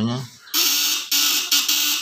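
Homemade 24-volt fish stunner with vibrating platinum contact points, buzzing loudly as the points chatter while it drives its transformer and a test bulb. The buzz starts about half a second in and cuts out briefly a couple of times.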